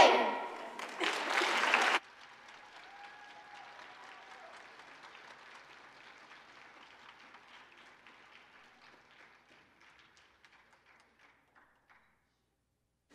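Audience applause at the end of a choir song. The last sung chord dies away at the start, the clapping is loud for about two seconds, then drops suddenly to faint and thins out, with near silence near the end.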